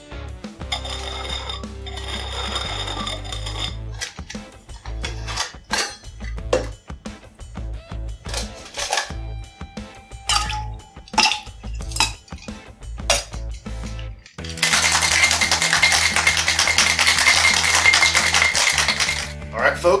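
Ice cubes dropped one at a time with tongs into a stainless steel cocktail shaker tin, each landing with a sharp clink. About fourteen seconds in, the shaker full of ice is shaken hard for about five seconds, a loud, dense, steady rattle. Background music plays throughout.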